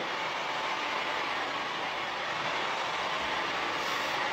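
Steady, even background hiss of room noise, with no change through the pause.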